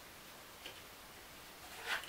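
Mostly quiet room tone, with a faint single click about two-thirds of a second in as thin laser-cut wooden puzzle pieces are fitted together, and a brief soft rustle near the end.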